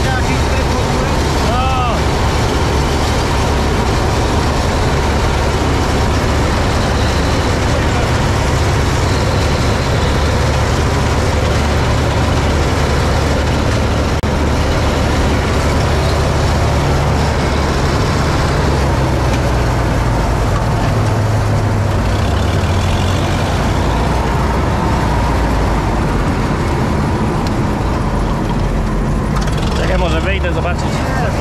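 Massey Ferguson 86 combine harvester running steadily while cutting grain, heard from the driver's seat: a constant engine drone under the dense clatter and rush of the header and threshing works. The engine note shifts a little around the middle.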